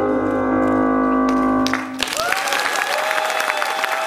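A live band holds its final chord, which cuts off about two seconds in. Audience applause follows at once, with a steady held tone running on over the clapping.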